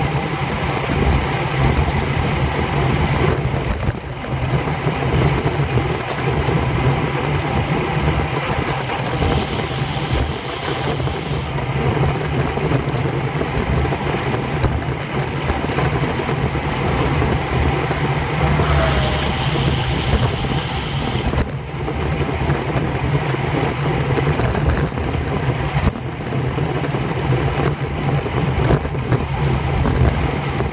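Steady wind rush on a handlebar-mounted camera's microphone, with tyre noise from a road bike riding at about 24 mph. A brighter hiss rises briefly about two-thirds of the way through.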